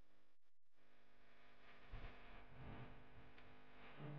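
Faint background music of sustained held tones, cutting out briefly under a second in, then swelling a little with soft low pulses from about two seconds.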